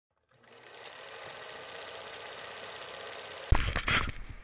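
A steady, fast mechanical rattle. About three and a half seconds in it cuts off and loud bumps and rumble begin, the sound of an action camera being handled.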